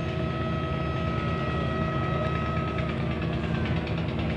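Boat engine running steadily: a low drone with a thin steady whine above it that dips slightly in pitch about three seconds in.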